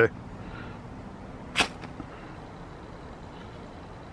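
A single quick scrape of a striker down a ferrocerium rod, one short sharp rasp about a second and a half in: the first strike to throw sparks into a bird's-nest tinder bundle.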